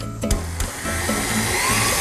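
Electric stand mixer switched on and running, a steady motor whirr that grows louder over the first second or so as it comes up to speed, with its flat beater working a creamed butter mixture in a steel bowl. Background music plays underneath.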